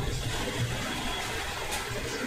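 Steady background noise: an even hiss with a low, uneven rumble underneath, with no distinct events.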